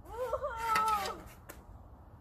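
A high-pitched young voice giving a drawn-out wordless cry, lasting about a second, that wavers in pitch and then trails off.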